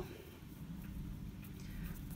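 Quiet room tone with faint handling sounds of cotton yarn being worked on a crochet hook, a few light ticks near the end.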